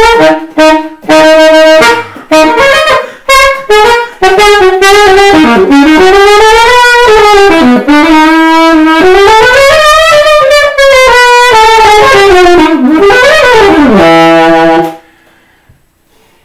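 Solo alto saxophone improvising jazz. It starts with a few short, separated phrases, then plays a long unbroken line full of swooping pitch bends. It ends on a low held note that stops suddenly about a second before the end.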